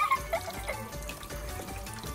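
Background music over water trickling down the spiral plastic chutes of a toy somen-noodle slider.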